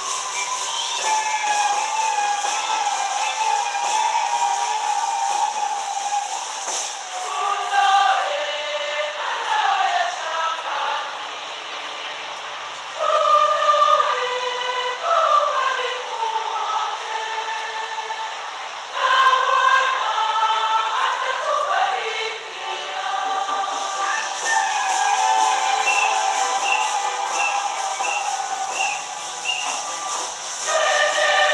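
Choir singing a slow sacred song, with long held notes and phrases that slide down in pitch; the singing swells louder about a third and about two thirds of the way through.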